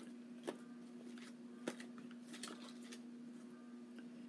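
A few light clicks and rustles of coins and their holders being handled while searching through a box of coins, over a steady low hum.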